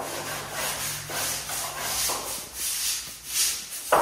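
Stiff broom bristles scrubbing a wall in repeated back-and-forth strokes, roughly two a second, with a sharper, louder stroke just before the end.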